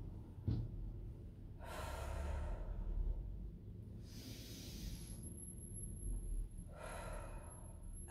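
A woman taking slow, deep breaths: one long breath about two seconds in and another near the end, with a soft click about half a second in.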